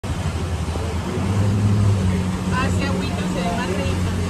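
Small boat's engine running with a steady low hum under a wash of wind and water noise. Voices talk briefly past the middle.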